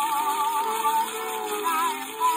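A soprano sings with orchestra accompaniment on an old Gennett 78 rpm shellac record. She holds one note with a wide vibrato for about a second, then moves through shorter notes, over a steady surface hiss.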